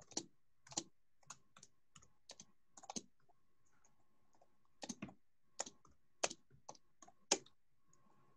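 Typing on a computer keyboard: faint, irregular keystrokes, with a pause of nearly two seconds midway before the typing resumes.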